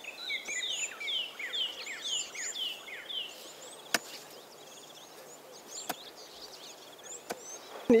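Birds calling outdoors: a quick run of short, high, descending chirps through the first few seconds, which then stop. After that come a few sharp clicks, the loudest about halfway through and fainter ones later.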